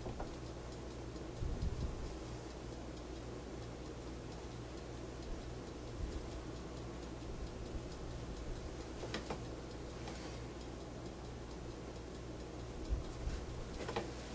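Quiet handling of shirt fabric as pins are pushed through the sleeve edges, with small clicks and a few soft knocks on the wooden table over a steady low hum.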